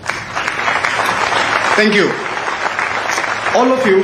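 Audience applauding, a dense steady clapping that starts suddenly, with a man's voice cutting in briefly about halfway and again near the end.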